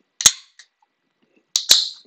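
Sharp clicks: one about a quarter second in, then two in quick succession near the end with a brief hiss between them.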